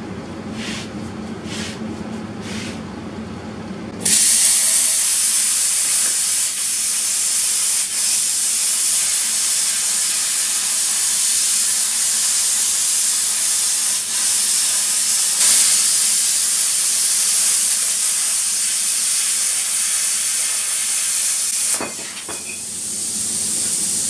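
Hypertherm Powermax65 plasma cutter cutting an opening in steel angle iron. A few short puffs of hiss come first, then the arc starts suddenly about four seconds in with a loud, steady hiss that runs for about eighteen seconds. Near the end the hiss drops to a quieter level.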